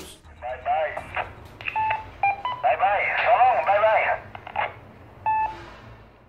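A voice received over a Wouxun KG-UV9D Plus handheld VHF/UHF transceiver, heard through its small speaker, thin and narrow like a radio channel. It is broken by several short electronic beeps.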